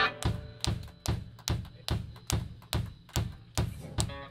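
Live drum kit playing a steady beat on its own, about two or three strong kick-and-snare hits a second with lighter cymbal hits between. A guitar chord dies away at the start, and the guitar drops out until near the end.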